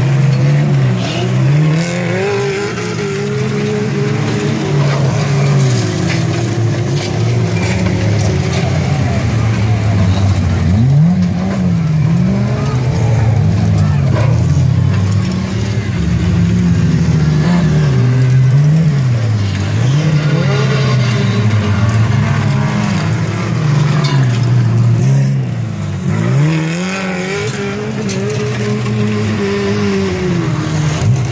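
Several small stock cars racing on a dirt track. Their engines rev up and down over and over, the pitch rising and falling as the cars pass along the straight.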